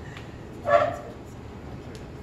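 A single short, high-pitched vocal cry from a person, a little under a second in, over the low hum of a room.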